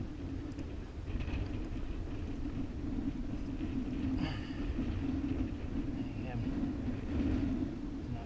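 Steady low rumble of wind buffeting an action camera's microphone, with a few short, faint bits of voice in between.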